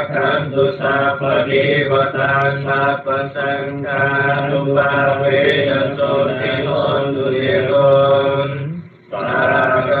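Buddhist liturgical chanting: a voice reciting in a steady, drawn-out chant, with one short break near the end. It sounds thin and cut off at the top, as through an online voice-chat connection.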